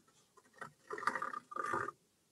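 A sewing tracing wheel with a toothed edge pushed and rolled across thick braille paper over foam, embossing a tactile line: two short strokes about a second in, with a brief break between them.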